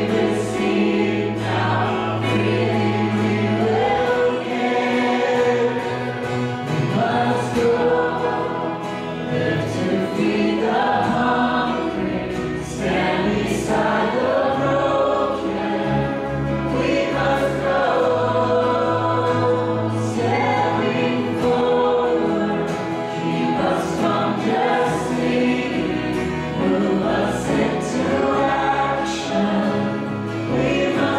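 Live worship band playing a song, with guitars, bass and keyboard under several voices singing together.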